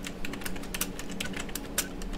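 Computer keyboard typing: a quick, uneven run of key clicks as a word is typed.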